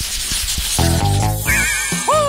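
A swishing transition sound effect, then background music: a short burst of chords about a second in, followed by a wavering high tone near the end.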